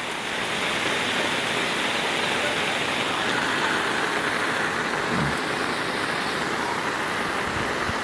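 Steady rushing noise of rain and floodwater, with a brief faint voice about five seconds in.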